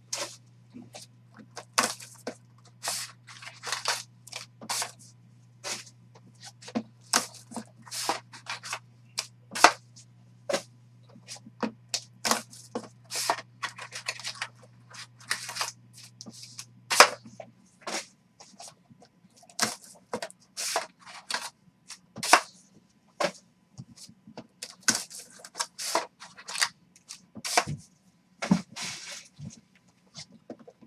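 Cardboard trading-card boxes being opened and wrapped card packs handled on a tabletop: a busy run of sharp clicks, taps and brief crinkling. A low steady hum sits underneath and stops a little over halfway through.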